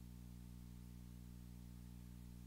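Near silence with a faint, steady low electrical hum that has many overtones, like mains hum in a sound system.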